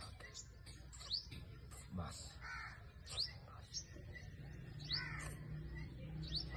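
Birds calling: a few harsh caws among short rising chirps that recur every second or two.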